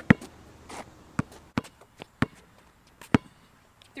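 Basketball bouncing on an asphalt court: about five separate sharp bounces spaced unevenly a second or so apart, the loudest at the start and about three seconds in.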